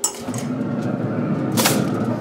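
Traeger pellet grill lid and grates handled as a foil-covered aluminium tray is put in: a sharp click at the start, a steady rushing noise, and a metal clunk shortly before the end.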